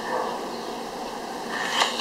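Steady, even hiss from an alcohol stove burning under an aluminium percolator coffee pot, with the water close to the boil. A voice starts near the end.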